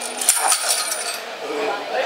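Light metallic tinkling: several small bright clinks with a high ringing tone over the first half.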